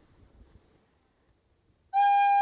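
Faint rustling, then near the end a plastic soprano recorder starts one loud, steady high note.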